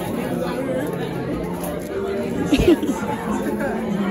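Crowd chatter: many voices talking at once in a large hall, with one voice briefly louder about two and a half seconds in.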